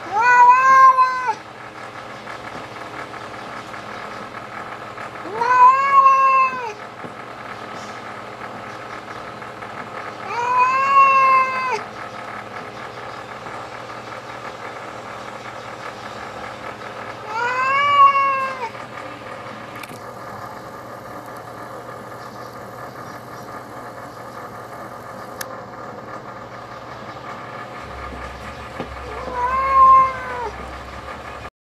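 Cat yowling in long, drawn-out territorial calls, five of them spaced several seconds apart, each rising and then falling in pitch: a standoff with a rival cat.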